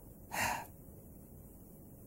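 A man's single short, sharp intake of breath, about half a second in, then faint room tone.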